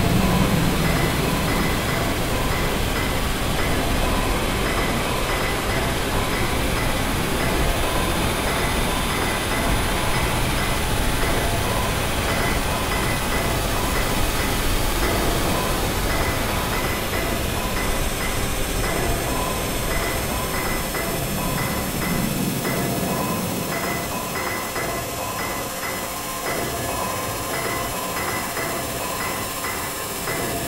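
Harsh experimental noise music: a dense wash of static over a low drone, with a repeating pattern of short high electronic blips that grows clearer in the second half while the low end fades out near the end.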